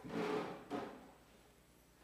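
Brief soft rustling or scraping handling noise in the first half-second, with a fainter one just after.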